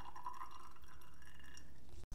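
Faint, steady trickle of liquid casting resin poured in a thin stream from a mixing cup into a silicone mold.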